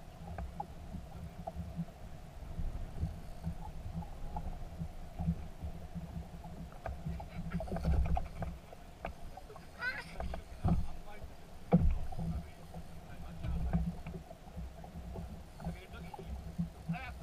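Small fishing boat sitting on the water with a steady low rumble of wind and water against the hull, a couple of sharp knocks on the boat about eleven and twelve seconds in, and a short chirping sound around ten seconds in.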